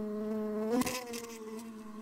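Cartoon bee buzzing sound effect: a steady insect buzz that wavers in pitch a little under a second in, then grows quieter.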